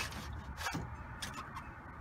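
Faint clicks and rubbing as a window pane is worked in its frame to get it off its tracks.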